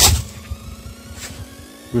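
Handling noise of work-gloved hands turning and rubbing soil off a fired PPSh cartridge case, with a sharp knock at the very start and a fainter one a little past the middle.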